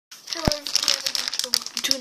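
Plastic bag of a toy army-men pack crinkling with quick, rapid crackles as it is handled right at the microphone, with one sharp click about half a second in.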